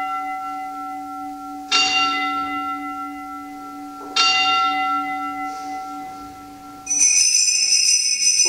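A single altar bell struck twice, about two and a half seconds apart, each stroke ringing out and fading, rung for the elevation of the chalice at the consecration. Near the end, a cluster of small altar bells jingles brightly.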